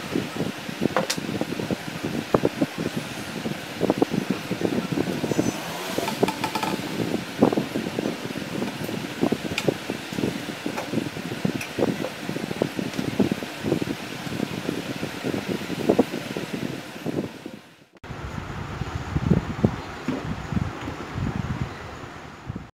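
PVC pipe tubes of a homemade finderscope being handled and slid together by hand: many short, irregular light knocks and rubs of plastic against plastic and the table, over a steady background hum. The sound dips briefly about eighteen seconds in, then the handling goes on.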